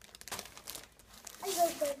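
Thin plastic wrapping of a diaper pack crinkling in a few short bursts as a toddler carries it. Near the end a toddler calls out twice, the loudest sound.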